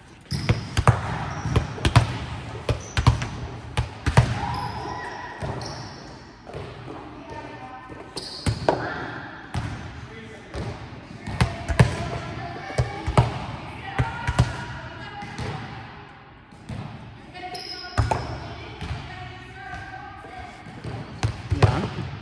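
A volleyball thudding again and again, bounced and hit on a gym floor: a series of sharp thuds at uneven intervals, ringing in a large hall, with faint voices in the background.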